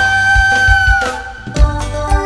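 Live band music starting a song: one long held high lead note that bends down about a second in, over bass and kick-drum beats, before the full groove comes in.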